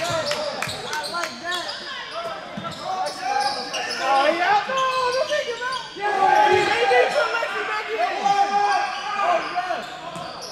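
Basketball being dribbled on a hardwood gym floor, with players and spectators calling out, all echoing in a large hall. The voices grow louder about four seconds in.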